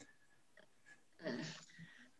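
Near silence, then about a second and a quarter in, a short, soft breathy sound from a person, like a breath drawn in just before speaking.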